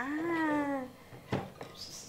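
A single drawn-out vocal call lasting under a second, rising slightly in pitch and then falling, followed about a second later by one sharp click from the key in the SHAD top case's lock.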